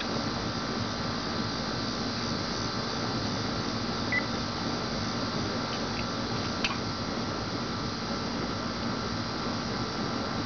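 A steady mechanical hum with a few faint steady tones in it. A short high chirp breaks it about four seconds in, and a sharp click comes just before seven seconds.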